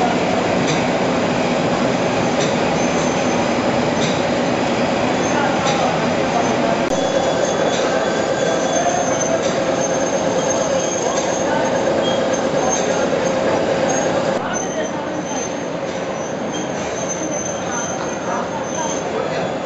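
Automatic roti-making machine running: a steady mechanical clatter of rollers and conveyors with a sustained squealing tone. The din drops a little about fourteen seconds in.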